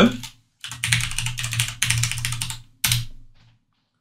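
Fast typing on a computer keyboard for about two seconds, then one separate keystroke a moment later: the Enter key that runs the typed command.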